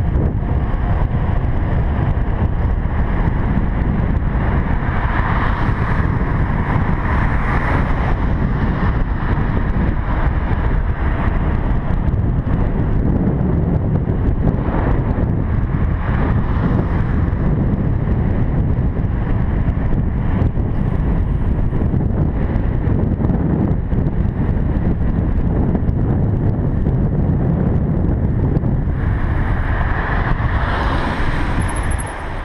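Wind rushing over the microphone of a bicycle-mounted camera while riding downhill, a steady loud rumble.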